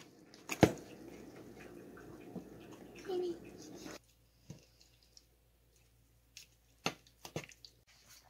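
Metal spoon stirring thick, creamy blended greens paste in a stainless steel pot: soft squelching for the first four seconds, then a few sharp clicks near the end.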